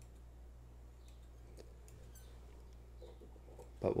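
Fly-tying scissors snipping the craft-fur fibres of a streamer fly, a few faint, scattered snips over a low steady hum.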